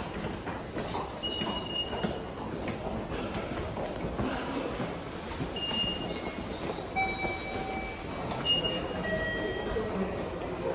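Tokyo subway station concourse ambience: footsteps and the steady rumble of the station, with short electronic beeps at several pitches, such as ticket gates chime, scattered throughout.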